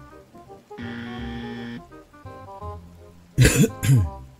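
Dark ambient background music with held notes, and near the end a man coughs twice, loud and short.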